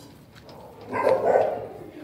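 Dog giving one short, low vocalisation, like a woof, about a second in and lasting under a second.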